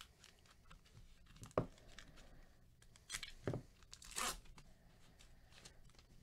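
Foil wrapper of a trading-card pack being torn open: a few short rips with crinkling, the loudest about a second and a half in and again between three and four and a half seconds in.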